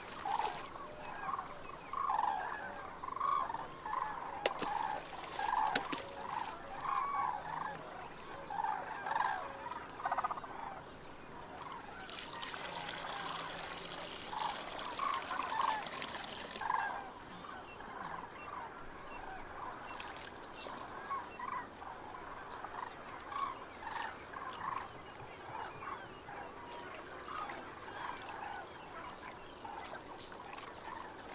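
Birds calling with short repeated calls throughout, and water poured into a metal bowl, splashing for about five seconds in the middle.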